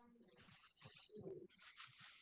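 Near silence on a video-call audio line, with only faint, indistinct background sounds.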